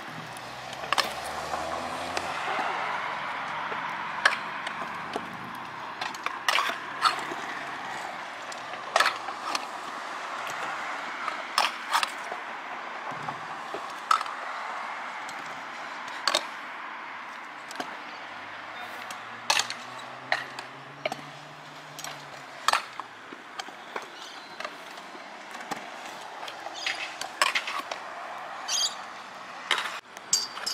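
Stunt scooter rolling on concrete skate park ramps, with irregular sharp clacks of the deck and wheels knocking and landing on the concrete, over a steady murmur of voices.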